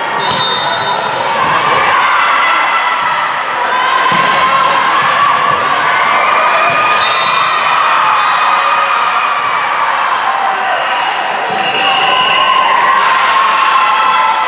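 Volleyball gym during a rally: the ball being struck, sneakers squeaking on the sport court, and many players' and spectators' voices calling out, all echoing in a large hall.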